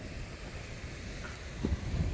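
Wind buffeting the microphone outdoors, a low uneven rumble with no other clear sound.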